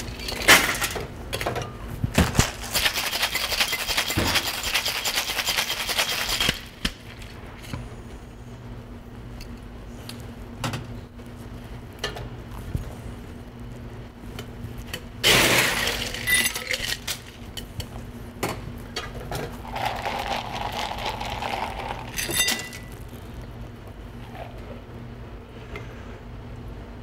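Ice clattering into a metal cocktail shaker tin and rattling hard as the drink is shaken for about six seconds. Later come two shorter bursts of ice and metal clatter in the tins.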